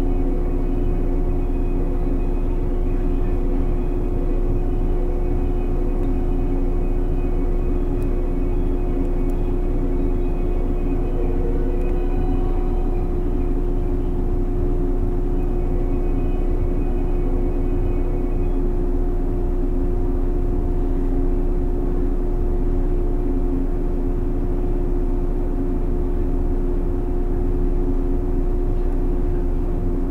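JR 115 series 1000-type electric multiple unit (car MoHa 114-1181) standing still with its onboard equipment humming steadily: a low rumble under a few held tones, unchanged throughout, while the train waits to depart.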